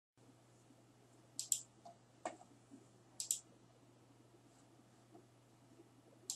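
Computer mouse button clicks: a quick pair about a second and a half in, a single click just after two seconds, and another pair a little after three seconds, over a faint steady low hum.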